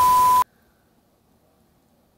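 TV colour-bar test-pattern sound effect: a steady high beep over static hiss that cuts off suddenly about half a second in, followed by silence.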